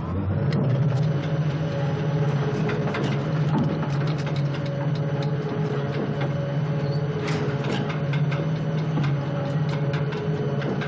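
A steady, low mechanical drone with many irregular clicks and rattles over it, like a machine or engine running.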